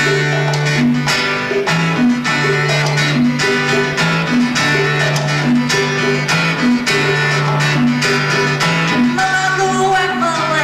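Live band music: a strummed guitar over a repeating bass line, with hand-drum strokes keeping a steady beat.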